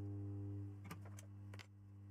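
Low, steady electrical hum with a few light clicks and taps of metal tools on a TV mainboard about a second in, as the flash chip is worked back onto the board.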